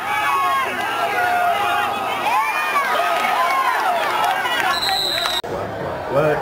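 Football crowd yelling and cheering during a play, many voices overlapping. Near the end a referee's whistle blows for about half a second, then the sound cuts off suddenly.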